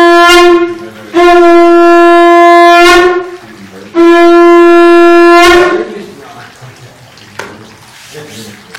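Conch shell (shankha) blown in three long, loud blasts on one steady note. The first is already sounding and stops about a second in, the next two follow with short gaps, and each breaks off with a small wobble in pitch. In a Hindu temple, conch blasts announce the start of worship before the altar is opened.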